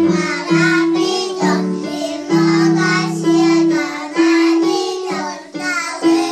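Young children singing a song together over instrumental accompaniment.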